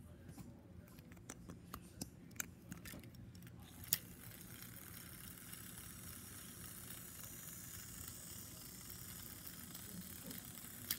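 Small plastic clicks and rattles as an AA battery is fitted into the battery compartment of a TrackMaster toy engine, with a sharper snap about four seconds in. After that a faint steady whir runs on.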